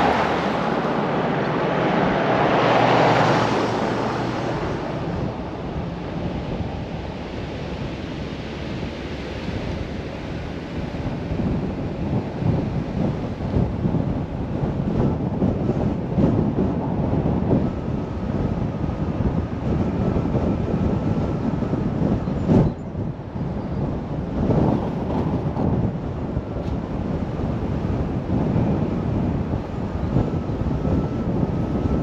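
Steady road and wind noise from a car driving, with wind buffeting the microphone. A van passing close in front makes a louder spell in the first few seconds, and a single sharp knock comes about three-quarters of the way through.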